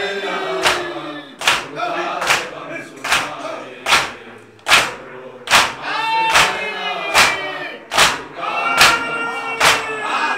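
A group of mourners chanting a nauha (lament) behind a lead reciter on a microphone, with the slaps of hands beating on chests (matam) landing together in a steady beat, about one every 0.8 seconds.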